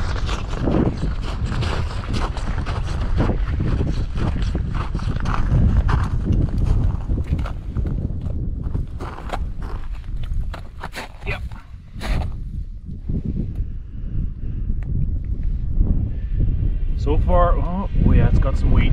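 Wind buffeting the microphone on open lake ice, with footsteps crunching on the snowy ice surface. A voice comes in briefly near the end.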